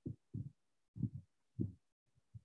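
Four short, low, muffled thumps at uneven intervals, with dead silence between them.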